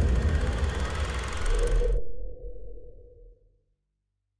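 Logo sting sound effect: a loud low rumble with a rushing hiss above it, cut off sharply about two seconds in, leaving a low hum that fades away over the next second or so.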